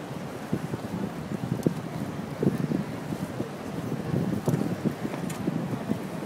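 Wind buffeting a phone's microphone outdoors: irregular low rumbling gusts that swell and drop several times, over faint street ambience.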